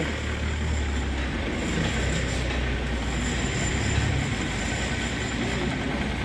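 Street traffic on a wet road: a heavy vehicle's steady low engine rumble over tyre hiss, the rumble dropping away about four seconds in.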